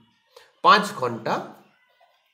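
A single voice-like call lasting about a second, its pitch rising and then falling.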